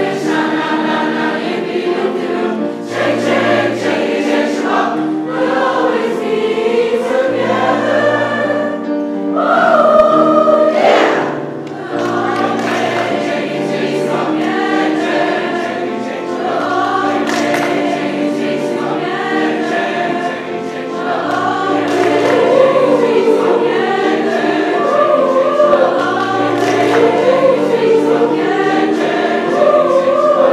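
Large school chorus of many young voices singing together, accompanied by a string orchestra with sustained chords and a low bass line.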